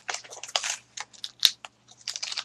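Handling of a small doll accessory and its packaging: a string of short rustles and clicks, with one sharper click about a second and a half in.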